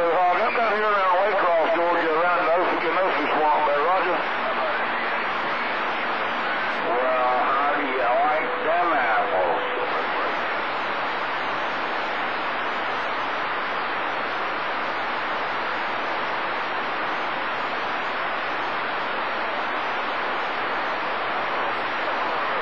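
CB radio receiver on channel 28 hissing with static as it picks up distant skip signals. Faint, garbled voices of far-off stations break through the static in the first few seconds and again around seven to nine seconds in, the second with a faint steady tone beneath it. After that the static runs on alone.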